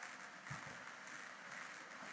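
Faint steady background hiss of the venue, with a short soft low thump about half a second in.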